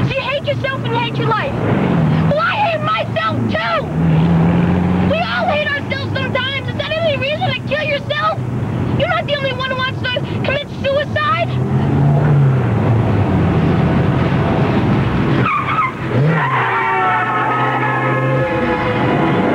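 Car engine and road noise inside a moving car, under voices for the first part. Music comes in near the end.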